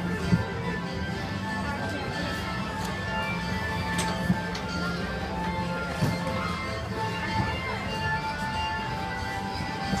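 Carousel music playing steadily from a galloping-horse carousel as it turns, with a few faint clicks.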